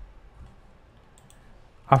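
A few faint, scattered computer keyboard keystrokes as code is typed, ending with a man's voice starting to speak near the end.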